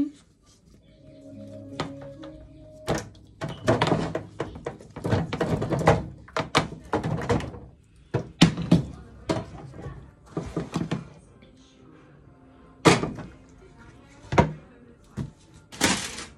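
Peeled raw potatoes tipped from a metal pot into a foil roasting tray. They land as a dense run of thuds with the foil crinkling for several seconds, then single knocks follow as pieces are set in place by hand.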